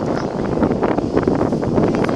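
Wind blowing across the microphone: a loud, steady rush with many small crackles.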